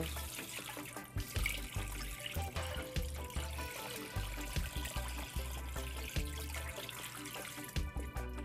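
Brine pouring in a steady stream from a mixing bowl into a plastic container, splashing into the rising liquid over fish fillets, with background music underneath.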